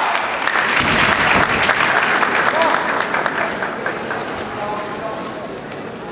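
Spectators applauding in a large hall, the clapping loudest for the first three seconds and then fading away, with a few voices over it.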